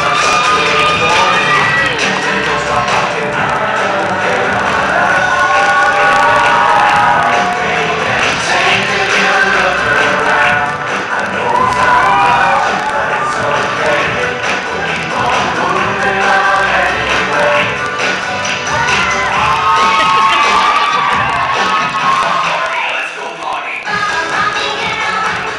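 A mix of 1990s pop songs playing loudly over a hall's speakers, with the audience cheering and shouting over the music.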